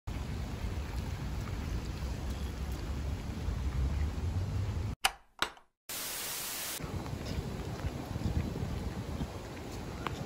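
Steady rain outdoors with a low rumble on the microphone. About five seconds in it cuts out for two sharp clicks of a tape-deck button, then a short burst of loud static hiss, before the rain comes back.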